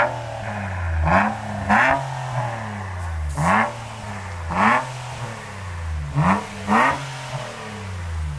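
2020 Infiniti QX60's 3.5-litre V6 running through a muffler delete (muffler replaced by a straight pipe): idling with six short throttle blips, two of them in quick pairs, each rising in pitch and dropping back to idle.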